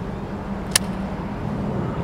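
Steady low motor rumble with a hum running through it, and one sharp click about three-quarters of a second in.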